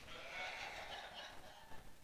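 Quiet room tone with a faint, short voice-like sound in the first half.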